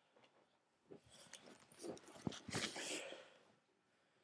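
Faint handling noise: rustling and a few small clicks and knocks for about two and a half seconds, starting about a second in, as the fabric mermaid tail and the camera are moved about.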